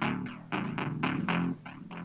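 An iPad synthesizer app playing a repeating sequence of short plucked bass notes, about five in two seconds, each with a sharp click at the start, through a Minirig portable speaker.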